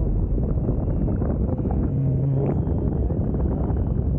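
Wind rushing over the microphone of a camera carried on a tandem paraglider in flight: a steady, loud buffeting noise with a faint, steady high whine above it.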